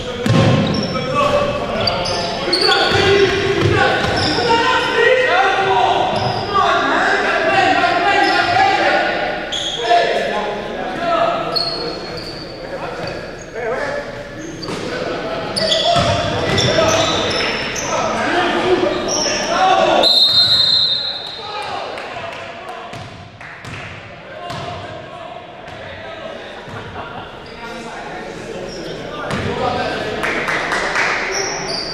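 Players' voices calling out across a reverberant gymnasium during a basketball game, with a basketball bouncing on the hardwood floor. The voices are loudest in the first two-thirds and die down after about twenty seconds in.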